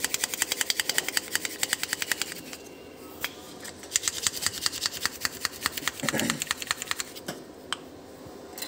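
Metal utensil clicking quickly against a ceramic bowl while stirring a thick mayonnaise sauce, in two spells of rapid strokes with a short pause between.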